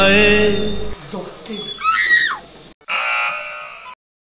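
A song with singing and bass cuts off about a second in, a short vocal sound follows, and then a game-show 'wrong answer' buzzer sounds once for about a second, fading out. The buzzer marks the action as the wrong way.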